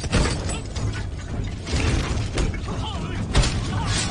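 Fight-scene sound effects: a series of sharp hits and rattling clatters, the loudest about three and a half seconds in, over a constant low rumble.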